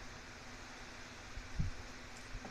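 Faint, steady hiss of background noise, with one soft low bump about one and a half seconds in.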